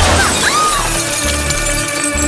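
Film soundtrack of an SUV crash: glass shattering and crash effects in the first second, then dramatic score music holding a steady chord over a low pulsing beat.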